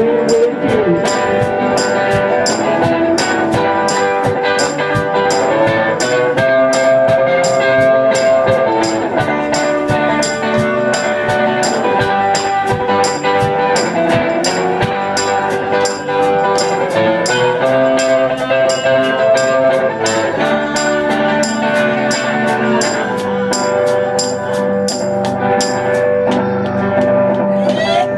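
Live blues band playing an instrumental break between sung verses: sustained melody notes over a steady beat of quick, high percussion ticks.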